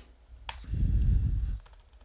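Computer keyboard: a single sharp key click about half a second in, as a command is entered in the terminal. It is followed by a louder, low, dull rumble lasting nearly a second.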